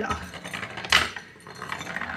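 Wooden balls rolling down the zig-zag rails of a wooden ball track, clattering and clicking as they drop from rail to rail, with a sharp click about a second in.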